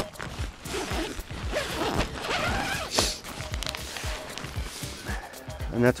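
A tent door being unzipped one-handed, with the canvas flap rustling and scraping as it is pushed open.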